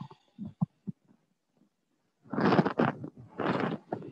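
A woman's two slow, audible breaths, starting about two seconds in. A few faint clicks come in the first second.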